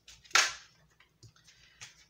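Tarot cards handled over a tabletop: one sharp snap of the cards about a third of a second in, followed by a few faint clicks as cards are moved.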